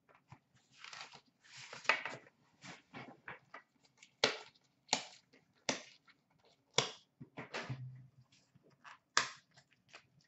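Trading card packs being torn open and handled: cardboard and wrapper rustling and crinkling, with several sharp snaps and tears in the second half.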